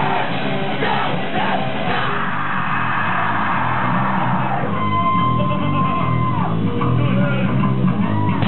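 Live thrash metal band playing: distorted guitar, bass and drums with shouted vocals. A long held high note rings out from about halfway through.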